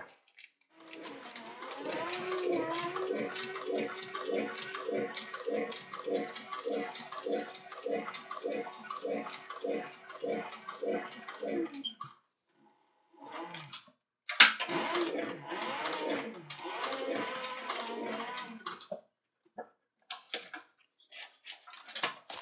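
Industrial cylinder-arm sewing machine stitching thick leather at a slow, even pace of about two stitches a second, with a steady motor tone underneath. It runs for about eleven seconds, stops, and after a sharp click starts a second, shorter run. A few light clicks follow near the end.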